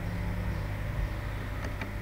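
Steady low background hum with no speech, and a couple of faint clicks near the end from a computer mouse being clicked.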